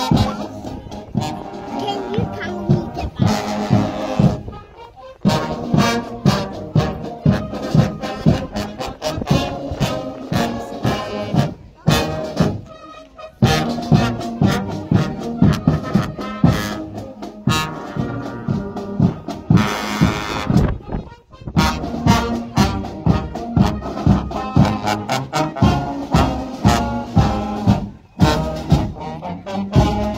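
Marching brass band playing a march: trombones, tubas and cornets over a steady marching drum beat, with a few short breaks between phrases.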